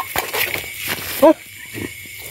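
Night insects trilling steadily in a rural field, over scattered handling clicks, with a short spoken exclamation about a second in.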